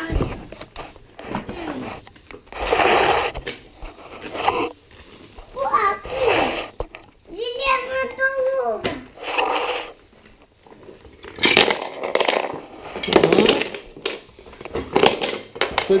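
A young child's voice making short wordless exclamations and babble, with one longer drawn-out call about halfway through.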